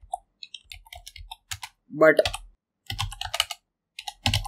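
Typing on a computer keyboard: a run of quick key clicks lasting about a second and a half, then a few more keystrokes after a short pause.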